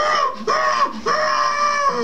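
A man's voice making high-pitched, wordless calls in imitation of a mammoth: three calls that each rise and fall in pitch, the last one the longest.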